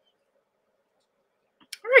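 Near silence, then a woman's voice begins speaking near the end.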